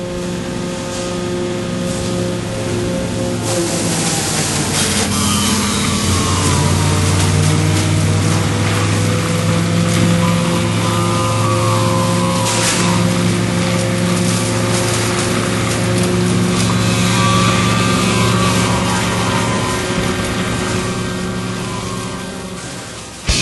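A steady engine-like machine drone with hiss, fading in over the first few seconds and then holding level, with faint wavering whine tones above it.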